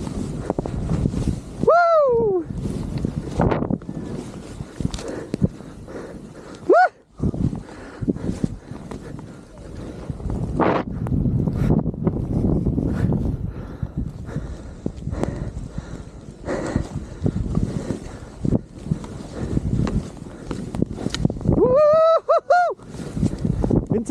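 Skis running through deep powder snow, a steady rumble and hiss with small knocks, and wind buffeting the action-camera microphone. A voice whoops briefly about two seconds in, again around seven seconds, and with a few rising-and-falling calls near the end.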